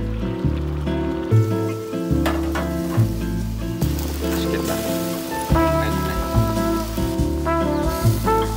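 Instrumental background music, with a bass line that changes note every second or so under held chords.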